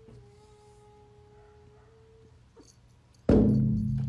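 A cat's low, drawn-out yowl held at one pitch for about two seconds. Near the end comes a sudden loud bang as a cat rears up and strikes the glass door.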